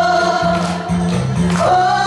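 Women's voices singing a song together, with guitar accompaniment and a steady, rhythmic bass line.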